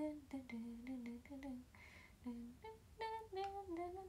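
A woman's voice humming a wandering 'rururu' tune in short notes, stepping up in pitch about three seconds in and then sinking back a little.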